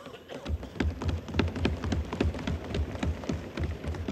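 Parliament members applauding by thumping their wooden desks and clapping: a dense, irregular patter of knocks and claps with heavy low thuds, starting about half a second in.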